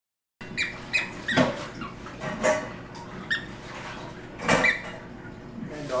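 Excited pet dog making a string of short, high-pitched squeaks in irregular bursts, starting about half a second in, while gripping a plush toy in its mouth.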